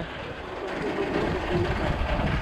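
Wind on the microphone outdoors: a steady low rumble with light hiss.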